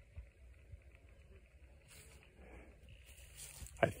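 Near silence: faint outdoor background with a brief soft hiss about two seconds in and again near the end, before a man starts speaking.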